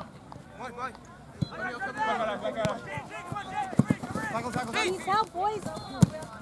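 Several voices calling and shouting across a soccer pitch, overlapping one another, with short thuds of a soccer ball being kicked, the loudest about four seconds in and another right at the end.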